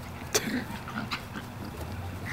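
Small dog playing with a ball on grass. A sharp click about a third of a second in is followed by a short low grunt, then faint movement sounds.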